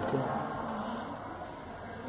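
Low steady background hum of room noise after one short spoken word at the start; gently rocking the glass slide makes no distinct sound.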